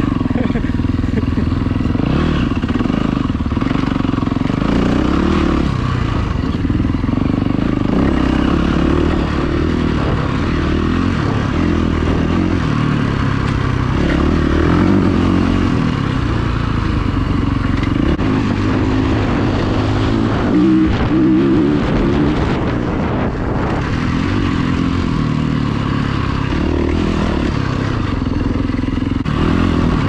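A vehicle engine running steadily while driven over rough ground, with some clatter.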